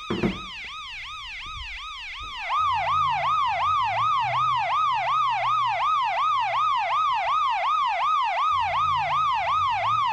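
Electronic siren wailing in a fast, even rise and fall, about three sweeps a second. It gets louder about two and a half seconds in, with a low hum underneath.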